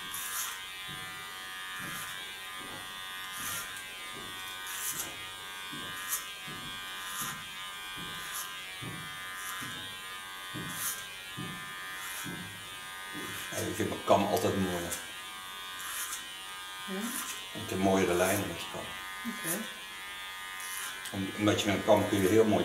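Electric hair clipper running with a steady buzz, cutting short hair over a comb in repeated short passes.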